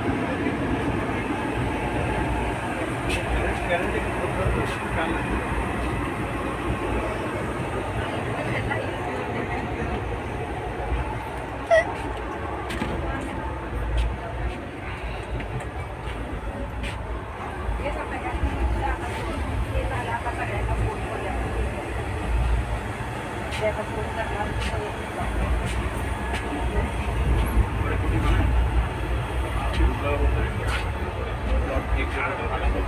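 Inside a second AC sleeper coach of a passenger train: a steady low rumble with scattered clicks and knocks, and faint indistinct voices of passengers.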